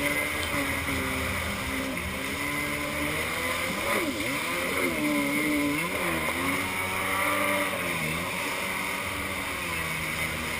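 Kawasaki X2 stand-up jet ski's two-stroke engine running under way, its revs rising and falling over and over as it is throttled through turns, over a steady hiss of spray and wind.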